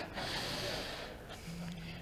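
A man drawing a breath in sharply, close to the lectern microphone, during a pause in his speech. Near the end there is a faint, brief hum of his voice.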